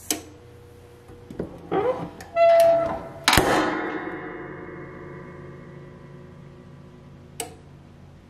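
A FancierStudio clamshell heat press being closed to start a press. A short high note comes first, then a loud metallic clank as the platen locks down, with metallic ringing dying away over a few seconds. A small click follows near the end.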